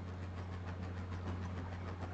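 A steady low hum with a faint hiss, the background noise of the recording while no one is speaking.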